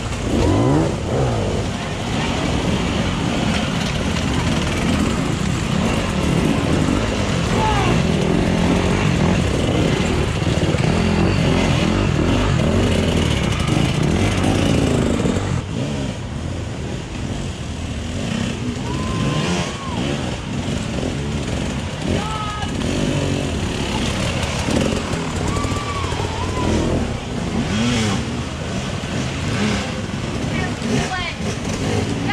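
Off-road dirt bike engines working hard as riders climb a rocky section, loudest in the first half and easing off about halfway through, with spectators' voices calling out.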